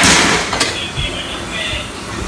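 Kitchen tap water running and splashing onto dishes in a sink, with a loud rush in the first half-second that then settles to a steadier flow.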